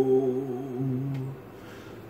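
A man humming a low, held note a cappella, which dips slightly in pitch and fades out a little over a second in, leaving quiet room tone.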